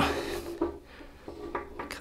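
A small wooden block handled against a wooden panel: light, uneven rubbing and knocking of wood on wood.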